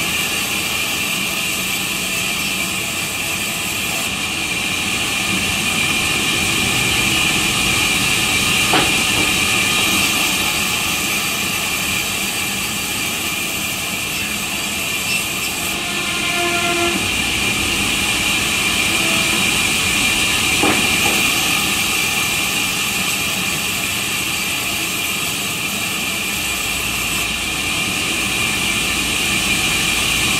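Large sawmill band saw running steadily as eucalyptus planks are fed through and ripped, giving a continuous loud hiss with a high-pitched edge. Two faint knocks of wood are heard, about a third of the way in and again about two-thirds in.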